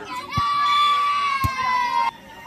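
A spectator's long, high-pitched shout, held for nearly two seconds and falling slightly in pitch, with two short sharp knocks under it.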